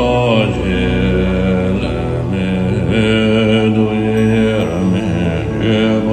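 A Buddhist mantra chant sung over music: one voice holds long notes, sliding briefly between pitches, above a steady low drone.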